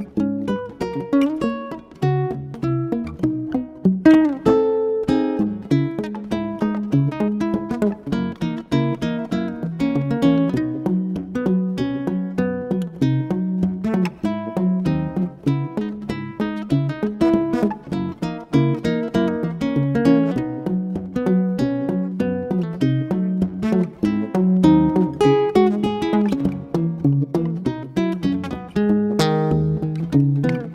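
Nylon-string classical guitar played fingerstyle as a solo chord-melody arrangement, a plucked melody carried over bass notes and chords without a break.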